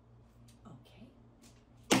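A quiet pause, only faint room tone with a steady low hum, then near the end a voice abruptly says "Okay."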